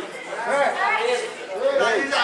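Indistinct voices of several people talking at once: background chatter, with no single voice clear.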